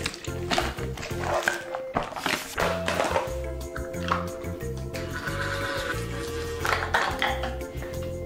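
Background music with a low, repeating bass line and held notes.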